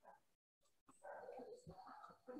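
Near silence, with faint background sounds starting about a second in.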